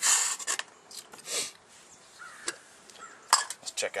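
A small metal cook pot being handled: a rubbing scrape at the start, another about a second and a half in, then a quick run of light clicks and clinks near the end.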